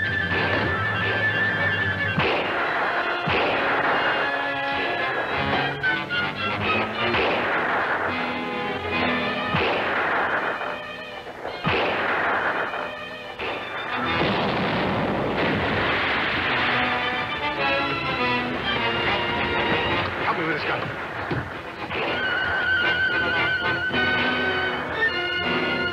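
Dramatic orchestral film score with several heavy blasts of cannon and gunfire cutting through it, each trailing off in a long rumble.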